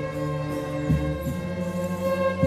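Ensemble of violins playing a slow melody in long, held notes over a low bass line that changes note about once every second and a half.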